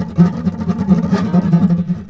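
Solo acoustic guitar music: plucked notes over a low, repeating bass figure.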